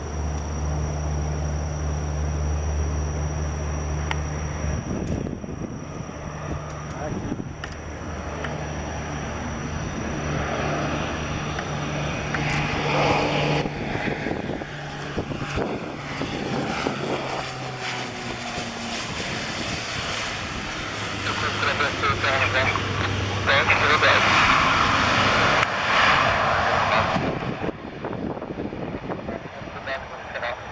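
Beechcraft King Air C90 twin turboprop landing. A steady low engine and propeller hum on approach builds into a loud propeller buzz as the aircraft passes low and touches down, loudest a few seconds before the end, then dies away.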